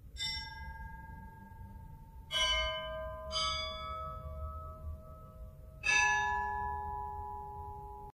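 Bells struck four times, each at a different pitch and left to ring on, over a low rumble.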